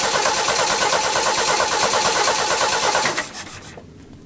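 An old Jeep's engine being cranked over by its starter motor, with a fast even pulsing, until the cranking stops about three seconds in without the engine running on.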